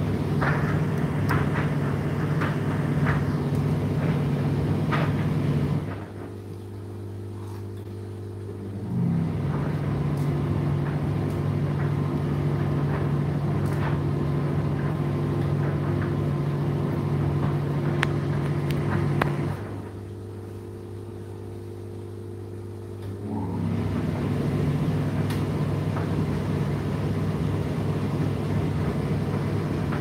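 Indesit IDC8T3 condenser tumble dryer running with a steady motor hum and light knocks of the load tumbling in the drum. Twice the drum motor stops for about three seconds, leaving a low hum, and then starts again with a brief rising whine.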